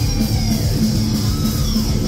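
Heavy metal band playing live and loud: distorted electric guitars over a drum kit with a fast, driving beat.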